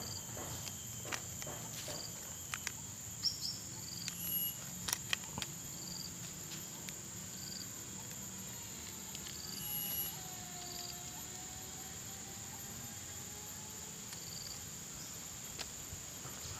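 Steady high-pitched drone of insects, with a few soft crinkles and clicks in the first few seconds as a plastic detergent sachet is handled and torn open.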